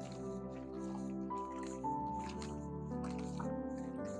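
Calm background music of sustained melodic tones, with irregular short clicks about two or three times a second over it.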